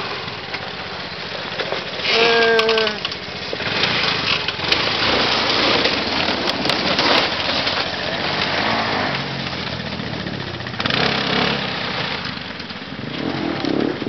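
Quad (ATV) engines running as the quads make their way along a rough dirt trail, with a short vocal call about two seconds in.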